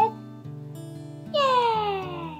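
Soft acoustic guitar background music, with a woman's long, high-pitched, excited "yeahhh!" that starts about a second in and falls steadily in pitch.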